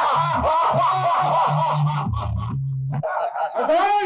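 A group of men laughing loudly and mockingly together, many voices overlapping, with deep rhythmic laughs underneath. The group laughter stops about three seconds in, and one voice rises and falls in a last loud laugh that cuts off abruptly at the end.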